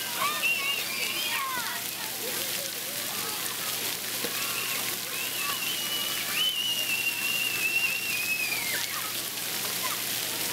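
Water jets spraying and splashing, with children shouting and squealing over them, including one long high squeal in the second half.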